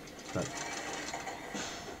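Steady fast mechanical clatter of door-vault machinery from an animated film's soundtrack: doors running along overhead conveyor rails. A brief hiss comes near the end.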